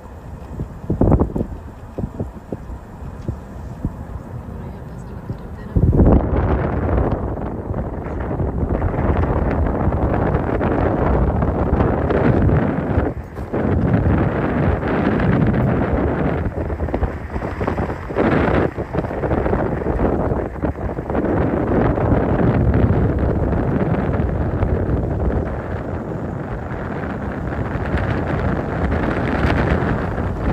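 Wind buffeting a phone microphone outdoors. It is light with a few knocks at first, then turns abruptly into a loud, gusting rumble about six seconds in that carries on with only brief lulls.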